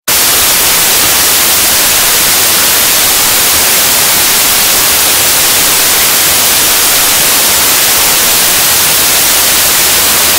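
Loud harsh static, a white-noise hiss sound effect, cutting in suddenly from silence and holding steady with no change.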